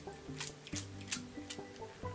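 Hand-held spray bottle spritzing liquid onto the scalp: three or four quick hissing squirts, about two a second, over soft background music.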